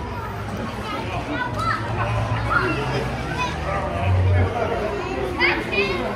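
Voices of people at a busy outdoor swimming pool: children shouting and playing, with scattered chatter.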